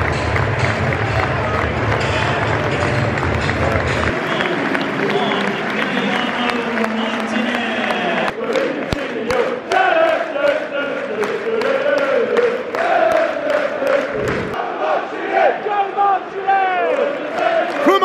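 Large football stadium crowd cheering and clapping. From about halfway through, the fans nearby chant together, many voices rising and falling in unison.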